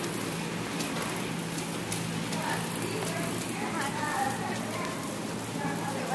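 Horse trotting on soft sand arena footing: muffled hoofbeats over a steady low hum.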